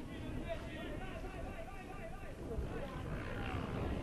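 Faint, distant voices of people shouting and calling on an open football pitch, over a low steady rumble.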